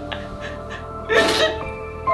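A woman sobbing theatrically, with one sharp breathy gasp about a second in, over background music of long held notes.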